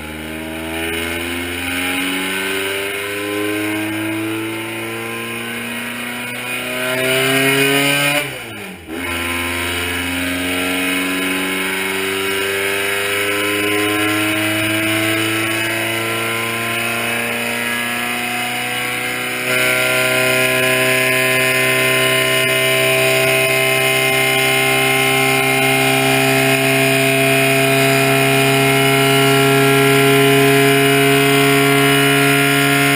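Air-cooled flat-four engine of a 1955 VW Beetle run under full throttle on a chassis dynamometer, revving up with pitch climbing. About nine seconds in the revs break off and drop briefly, then climb again. About twenty seconds in it gets louder and holds high revs, creeping slowly higher.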